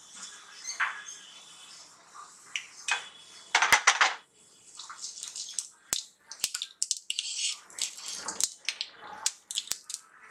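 Cumin and mustard seeds sizzling in hot oil, a steady hiss broken by many sharp crackles and pops as the seeds splutter, loudest about four seconds in. A spatula stirs them in the pan.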